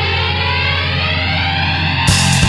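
Heavy punk-metal band holding one distorted electric guitar and bass chord, ringing out steadily with the drums silent and a slow sweep in its upper tone.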